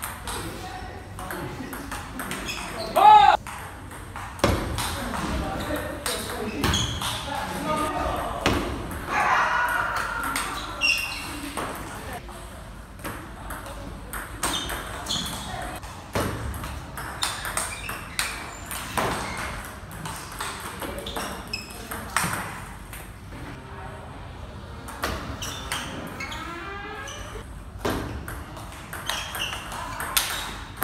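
Table tennis rallies: the ball clicking back and forth off the bats and the table in quick succession, with short breaks between points.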